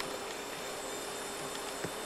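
Faint steady hiss with a low steady hum underneath, and a light click near the end.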